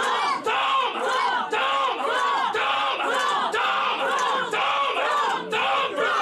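A man shouting loud, rhythmic cries into a microphone through the PA, about two rising-and-falling cries a second, with a crowd of voices behind.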